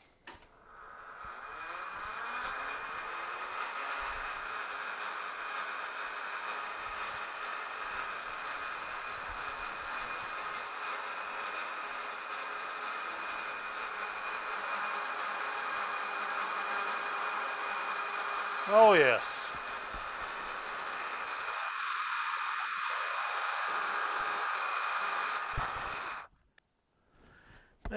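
Precision Matthews PM-1127 metal lathe spinning up with a rising whine, then running steadily with a constant hum and whine through a facing cut on a part in the four-jaw chuck, and stopping at the very end. About three-quarters of the way through there is one brief, loud sound that slides down in pitch.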